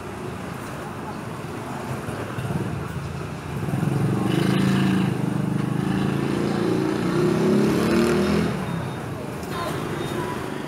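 Street traffic with a motorbike engine running close by, growing louder at about three and a half seconds in and easing off near the end. Indistinct voices sit underneath.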